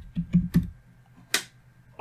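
Computer keyboard keys being typed: a quick run of key presses in the first half-second, then one sharper, louder key click a little past the middle, as a new number is entered into a field.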